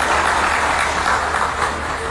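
Audience applause in a hall, a steady patter of many hands clapping that begins to die away near the end.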